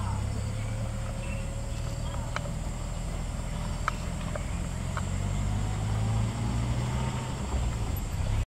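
Safari vehicle's engine running as a low, steady rumble, with a faint whine that rises slowly in pitch and a few sharp clicks.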